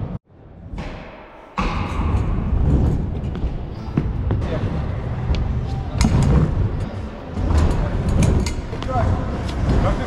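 Stunt scooter rolling on wooden skatepark ramps, with repeated knocks and thuds of wheels and deck against the ramp, loud from about a second and a half in.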